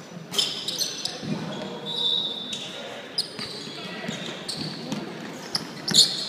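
Sounds of a basketball game on a hardwood gym court: sneakers squeaking several times, a ball bouncing, and players' voices in the background.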